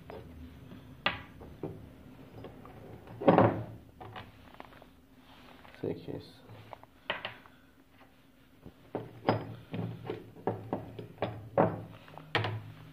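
Scooter variator rollers being set down on and lifted off the metal pan of a pocket digital scale: a series of irregular clicks and knocks, the loudest about three seconds in.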